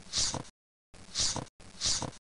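A person breathing heavily through the nose close to the microphone, three breaths in quick succession. Each breath swells into a hiss, and a noise gate cuts the sound to dead silence between them.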